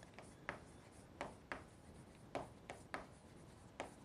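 Chalk writing on a chalkboard: a faint run of short taps and scratches, about eight strokes at uneven intervals, as a word is written out letter by letter.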